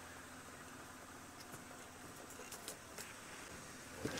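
Quiet, steady low hum of an open safari vehicle's engine running slowly under a faint hiss, with a few soft ticks.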